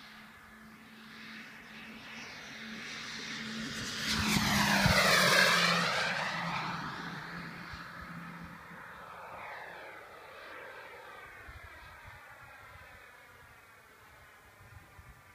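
Ultraflash radio-controlled model jet making a fast pass: its engine noise builds to a loud peak about five seconds in, the pitch sweeping as it goes by, then fades as it climbs away.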